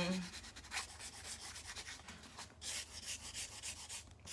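Felt-tip Prima marker scratching in quick, repeated back-and-forth strokes across masking tape as it is coloured in.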